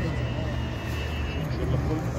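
Murmur of voices in a crowd over a steady low rumble, with a thin high-pitched tone that cuts off about a second and a half in.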